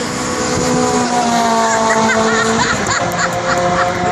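Race cars' engines held at high revs as they pass along the circuit, a Mazda MX-5 and a Renault Clio 182 among them; the engine note falls slowly in pitch, and a second car's note takes over about three seconds in.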